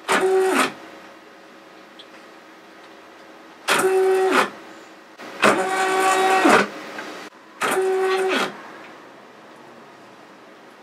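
Motor of a computer-controlled rotary head driving the spindle through a toothed timing belt, making four moves. Each move is a whine that climbs in pitch as it speeds up, holds steady, then drops as it slows to a stop.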